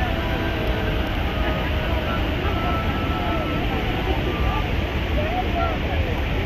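Steady, loud roar of Niagara Falls' falling water, with faint voices of people mixed in.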